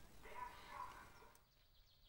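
Near silence: faint outdoor ambience with a few faint distant sounds in the first second, fading out to silence.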